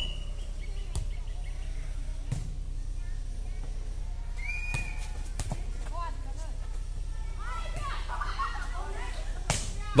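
Rally of air volleyball: a light inflatable ball slapped by players' hands about five times, the hits spaced irregularly a second or more apart, with faint players' calls and shouts in the second half over a steady low background hum.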